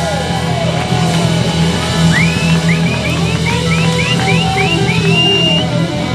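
Live rock band playing: electric guitar, bass and drum kit. About two seconds in, the lead guitar plays a quick run of repeated rising high notes, ending on one held note.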